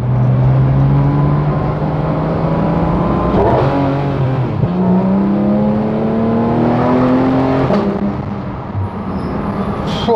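Porsche 911 GT3 RS (991.2) naturally aspirated 4.0-litre flat-six, heard from inside the cabin under hard acceleration. Its note climbs steadily through the middle of the clip, then drops away about eight seconds in as the car comes off the throttle.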